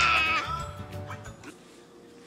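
A young child's high-pitched excited squeal that trails off within the first second and a half.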